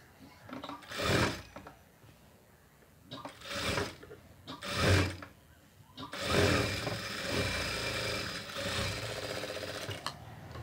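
Industrial sewing machine stitching fabric in a few short bursts, then running steadily for the last four seconds.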